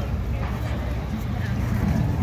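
Bystanders talking over the low, steady rumble of approaching police motorcycles on a wet road.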